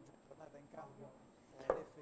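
A faint, barely audible voice, then a single sharp knock near the end.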